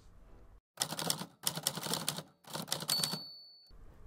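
Typewriter keys clattering in three quick runs, with a bell dinging briefly during the last run.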